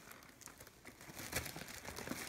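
Faint crinkling and rustling of a doll box's plastic packaging as a child's hands tug at the doll tied inside, with a few light clicks.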